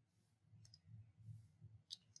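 Near silence with a few faint computer mouse clicks, the clearest just before the end, over a faint low hum.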